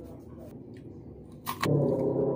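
A crisp, crunchy bite into a piece of unripe green mango about a second and a half in, over a low background hum. Right after the bite a loud, steady low drone sets in.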